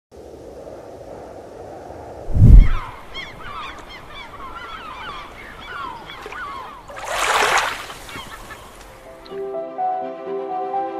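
A deep boom about two seconds in, then a flock of birds calling in many short overlapping cries. A loud whoosh comes about seven seconds in, and music with held notes begins near the end.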